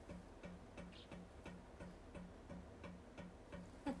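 Faint, regular low popping, about three pops a second: the pipe noise in a sealed room that she says stops when a window is opened and starts again when it is closed, a sign of air pressure in the pipe.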